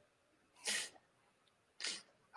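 Two short breath sounds from a man: a quick puff of breath out a little way in, then a short breath in near the end, just before he starts to speak.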